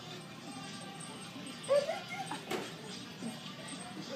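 A small child's short, high squeal about halfway through, followed by a sharp tap or clap, over faint background voices.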